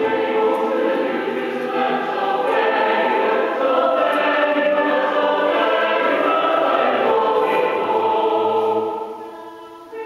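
A choir of many voices singing a shape-note hymn in sustained chords, the phrase dying away near the end.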